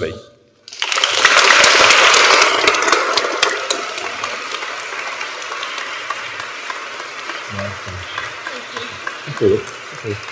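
Audience of children and adults applauding in a church. The clapping starts about a second in, is loudest over the next few seconds, then slowly dies down.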